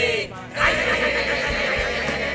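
A group of teenage boys yelling together in one long, wavering shout that starts about half a second in.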